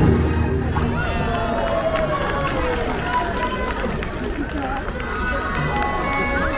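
Christmas parade music playing outdoors as a float passes, with voices over it and spectators along the route.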